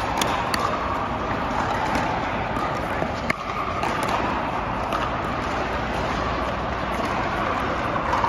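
Busy indoor pickleball hall: a steady din of hall noise with scattered sharp pops of paddles hitting plastic balls on nearby courts, the loudest pop about three seconds in.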